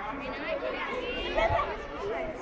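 Many children's voices chattering at once, a group of kids talking over one another with no single voice standing out.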